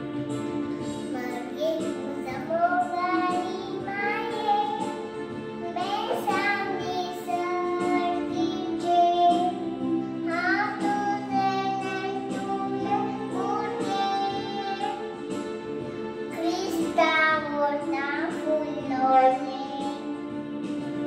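A young girl singing a melody into a microphone, holding long notes, over steady instrumental accompaniment.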